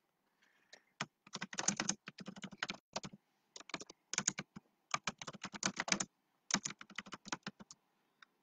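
Typing on a computer keyboard: quick runs of keystrokes with brief pauses between them.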